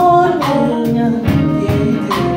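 A woman singing held, wavering notes into a microphone, backed by a live band with electric bass, drums and keyboard.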